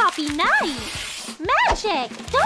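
Young women's voices making two short exclaiming, pitch-arching vocal sounds, with a soft rustling hiss between them.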